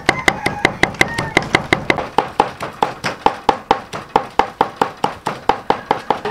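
A knife chopping dried red chilies on a thick round wooden chopping block: a steady run of sharp knocks, about five strokes a second, each with a brief ring.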